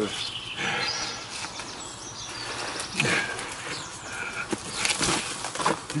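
Rustling and scraping of branches and bark as a man climbs down a tree, with a couple of sharp knocks about halfway through and near the end.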